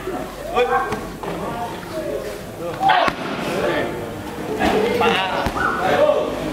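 Strikes landing on handheld Muay Thai pads, with one sharp smack about three seconds in, among voices.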